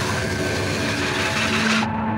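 Movie trailer soundtrack: music under a dense rushing sound effect. Near the end the rush drops away, leaving a held low note as the title card appears.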